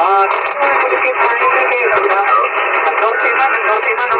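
Boat's two-way radio: a voice coming through a burst of static, sounding thin and boxy as through a small speaker.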